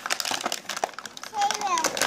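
Clear plastic packaging of a Play-Doh set crinkling in small quick clicks as several hands tug at it, with a toddler's voice over it late on.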